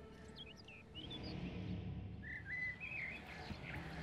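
Songbirds chirping: short high chirps in the first second, then a warbling whistled phrase a little after two seconds in, faint under a low music bed.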